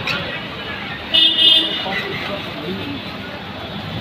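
A vehicle horn toots once, a little over a second in, for about half a second, over the steady noise of street traffic.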